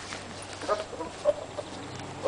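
A few faint, short animal calls, spaced a fraction of a second apart.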